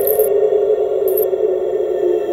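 Eerie horror-score drone: one sustained synthesized tone slowly sinking in pitch. Two short high jingles, at the start and about a second in, like anklet bells on a walking figure.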